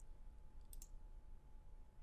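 Two faint computer mouse clicks in quick succession a little under a second in, over a quiet steady room hum; this is the click that picks a new entry from a software drop-down list.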